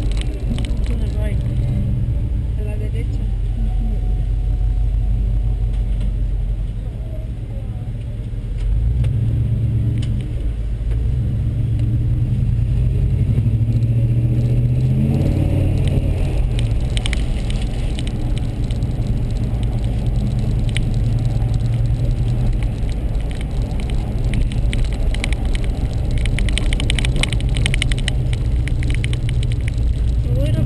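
Car engine and road noise heard from inside the moving car's cabin: a steady low rumble that dips briefly about seven seconds in and then picks up again.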